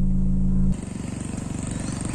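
A steady low hum cuts off abruptly less than a second in. It gives way to the engines of police vehicles driving past, a fast, even engine throb with road noise.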